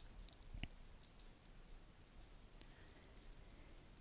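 Near silence with faint computer clicks: a single click about half a second in, then a run of light ticks in the second half, as a mouse clicks and a keyboard types.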